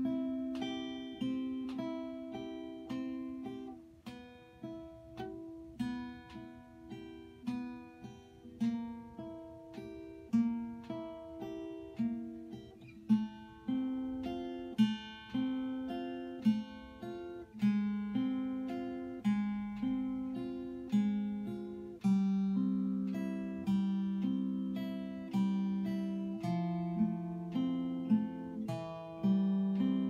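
Steel-string acoustic guitar played fingerstyle at a slow practice tempo: an arpeggio exercise of single fingerpicked notes in a steady, even stream, each note ringing into the next over changing chord shapes.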